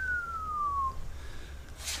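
A person whistling one long falling note that slides steadily down and stops about a second in, over a steady low hum.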